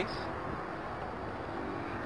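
Steady low background noise in a pause between words, with no distinct sound standing out.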